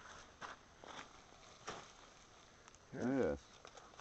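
A few faint ticks or rustles, then about three seconds in a man's short wordless vocal exclamation, an "ooh" or hum that rises and then falls in pitch.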